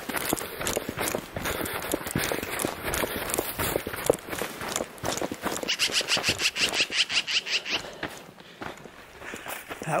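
Footsteps of a person running downhill through dry grass and brush, with scuffing and rustling at every stride; for about two seconds past the middle the strides fall into a quick, even rhythm of about six or seven a second.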